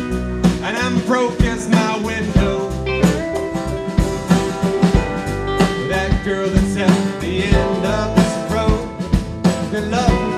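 Live Americana band playing an instrumental passage: strummed acoustic guitar, electric guitar, bass and drum kit over a steady beat of about two drum hits a second.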